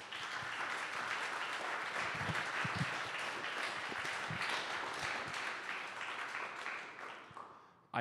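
Audience applauding: steady clapping from many hands that fades out over the last second or so.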